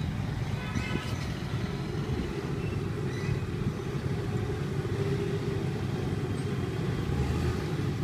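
Small submersible electric water pump running in a tub of water: a steady low hum. A brief higher-pitched squeak comes about a second in.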